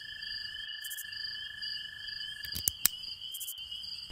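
Crickets chirping in a continuous, pulsing night-time ambience, with a few short clicks a little before three seconds in.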